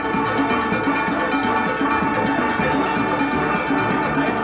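Steel band playing live: many steelpans ringing out together, with low notes repeating in a steady rhythm underneath.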